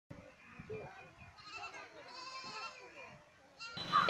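Goats bleating faintly, several short wavering calls, over quiet village ambience.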